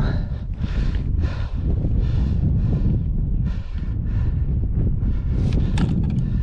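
Wind buffeting the microphone, a steady low rumble, with short rustling noises about every half second.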